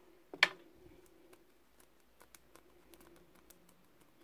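Fingers working a wax-coated wool ear, giving faint scattered ticks and rustles, with one sharper click about half a second in.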